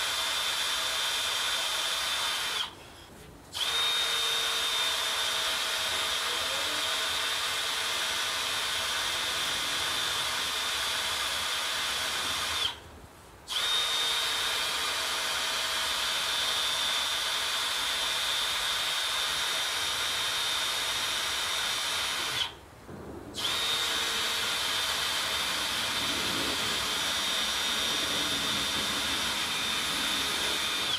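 A handheld power drill running in long steady runs of about ten seconds with a high whine, stopping briefly three times; the whine sags in pitch as it slows before each pause.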